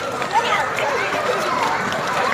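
Many young children's voices calling and chattering at once, over the patter of running feet as a group of children hurries out.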